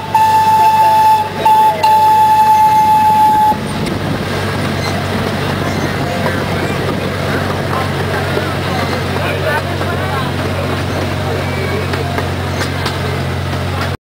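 Miniature park train's horn sounding one long steady note, broken twice briefly, cutting off about three and a half seconds in. After it the train's motor keeps up a steady low drone as it rolls along.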